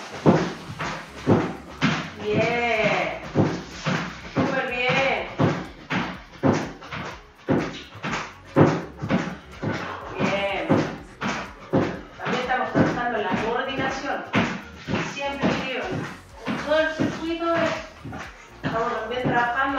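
Feet stepping quickly on and off a low aerobic step platform, a steady run of thumps about two a second, with a voice over them.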